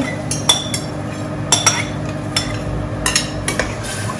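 A metal spoon clinking and scraping against a stainless-steel pot as dried fish is tipped in and stirred: a scattered series of sharp clinks, some with a short metallic ring, over a steady low hum.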